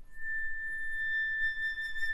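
Concert flute holding one long, steady high note that begins just after a brief pause.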